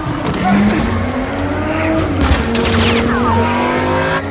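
Supercar engine revving and accelerating, its pitch climbing. Tyres squeal around three seconds in as the car pulls away across a polished floor.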